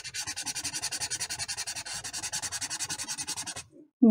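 Felt-tip marker scrubbing on paper in quick back-and-forth strokes, about eight a second, as an area is coloured in. The strokes stop shortly before the end.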